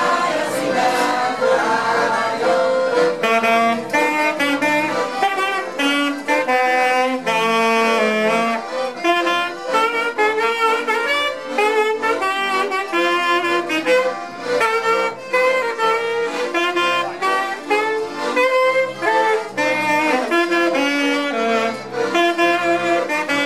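Alto saxophone playing a lively folk-song melody, with two piano accordions playing the accompaniment.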